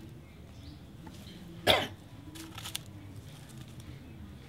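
A person coughs once, sharply, a little under two seconds in, followed by a few faint clicks.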